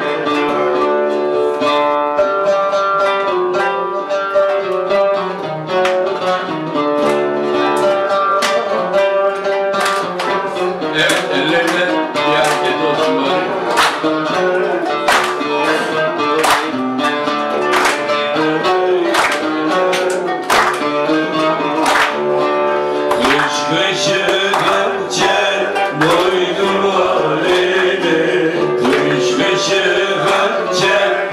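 Oud plucked with a plectrum, playing a continuous run of melodic notes.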